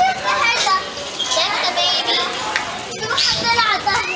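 Several children's voices talking and calling out over one another, high-pitched and continuous.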